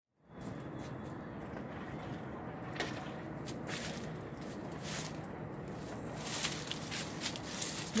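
Outdoor gas burner running steadily under a large steaming stockpot of corn, fading in just after the start, with a few light knocks and clatters as the pot is handled.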